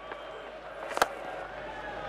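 A willow cricket bat striking a leather ball once: a single sharp crack about a second in.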